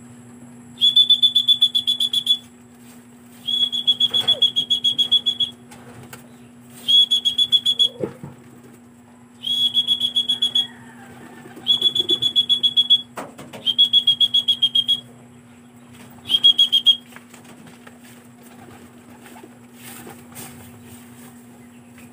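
A pea whistle blown in seven loud, rapidly trilling blasts at one steady high pitch, each lasting one to two seconds. This is the kind of whistle a fancier uses to call racing pigeons down to the loft.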